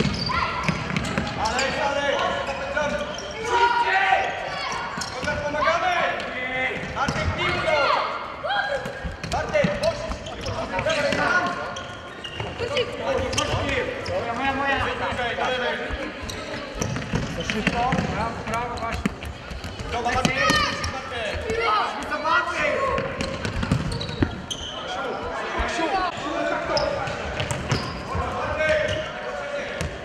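Indoor futsal game: the ball being kicked and bouncing on the court floor, with voices calling out over it throughout.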